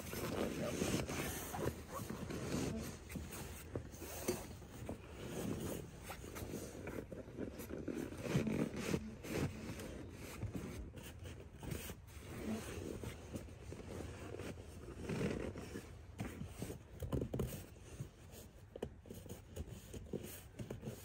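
Fabric seat cover rustling and scraping in irregular strokes as it is pulled and worked down over a truck's rear seat back, a tight fit.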